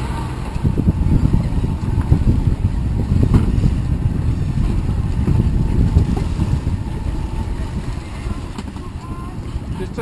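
Motorboat under way: a steady low rumble of its outboard motors and of wind and water noise against the microphone. It eases off somewhat over the last few seconds.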